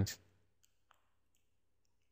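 A few faint, scattered clicks from a computer mouse's scroll wheel, with near silence between them.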